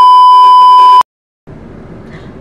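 A loud, steady 1 kHz test-tone beep played with a TV colour-bar pattern as an editing transition, lasting about a second and cutting off abruptly. After a brief silence, a steady low background rumble begins.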